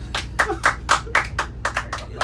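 A small group of people clapping their hands, irregular, uneven claps, over a steady low hum.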